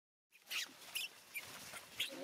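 Dry fallen leaves rustling and crackling under monkeys' hands and feet: a few short, sharp crackles about every 0.4 seconds.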